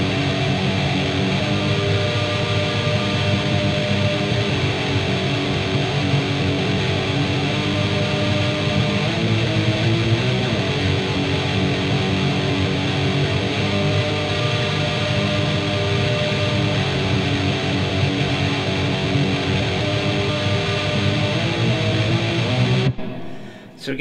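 Fender electric guitar playing a distorted, tremolo-picked metal riff on the low strings, moving into a G minor chord. The riff runs continuously and stops abruptly about a second before the end.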